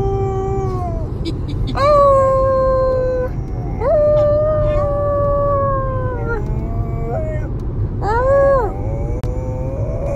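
A dog howling in long, drawn-out calls. The longest lasts over two seconds, and a short call that rises and falls comes near the end. A low, steady rumble of the car cabin runs underneath.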